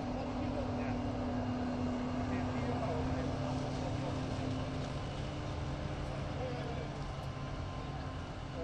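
Krone Big X forage harvester running under load while chopping maize, a steady engine-and-cutterhead drone joined by a tractor pulling the silage trailer alongside. A higher steady tone in the drone fades out about five seconds in and returns near the end.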